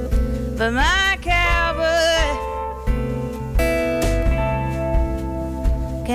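Live music: a woman singing over an acoustic guitar and a hollow-body electric guitar. Her voice slides up about a second in and wavers, then settles into steadier held notes.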